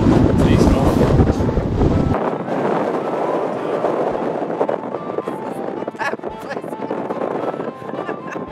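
Wind buffeting the camera microphone, a heavy rumble for about the first two seconds that drops off suddenly to a lighter rush of gusting wind. Background music with held notes plays throughout.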